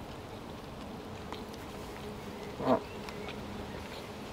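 A faint, steady buzzing hum of a flying insect. About two-thirds of the way through there is one short 'mm' from a man's voice as he eats.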